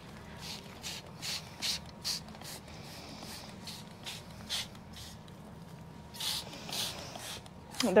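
Hand trigger spray bottle squirted again and again onto lemon tree leaves: a string of short hissing spritzes, about two a second, with a pause of a second or so past the middle.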